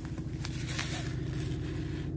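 BMW 218d's four-cylinder turbodiesel engine idling, a steady low hum heard from inside the cabin, with a little faint rustling.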